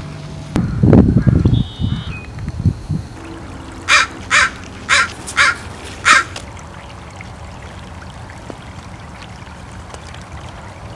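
A crow cawing five times in quick succession, over the low trickle of a shallow stream. Near the start a loud low rumble lasting about a second and a half is the loudest sound.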